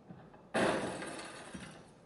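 A sudden crash of shattering glass about half a second in, its clatter fading away over the next second and a half.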